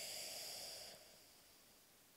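A boy drawing a quick audible breath between verses of Quran recitation, a soft hiss lasting about a second.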